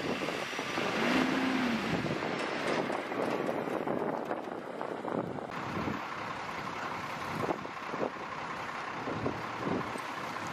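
A heavy six-wheel military truck drives over rough desert ground, heard through wind on the microphone. About five and a half seconds in the sound changes to wind noise with several short scrapes and rustles as a heavy cargo net is spread out over gravel.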